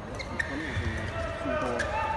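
Badminton rally: a few sharp racket strikes on the shuttlecock and players' shoes squeaking on the court, with voices in the hall.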